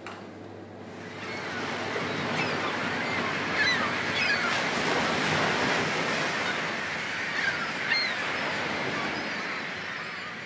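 Recorded seashore sound effect: surf washing in, swelling up about a second in and then holding, with short gull cries scattered over it. This is the sea soundscape that accompanies the 'Sound of the Sea' dish.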